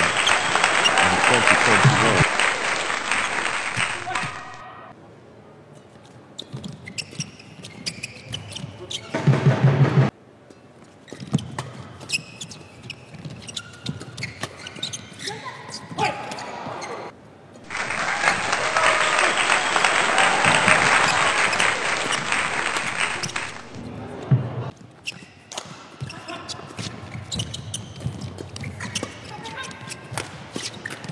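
Badminton rallies: sharp racket strikes on the shuttlecock and players' footwork on the court. Between rallies come two long spells of crowd noise in the arena, one at the start and one past the middle.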